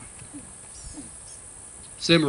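Quiet outdoor ambience with a steady high hiss and a few faint, short bird chirps a little under a second in.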